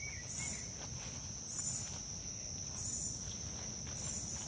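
Outdoor insect chorus: a steady high-pitched trill runs throughout, with a louder, higher pulsed call repeating about every 1.3 seconds.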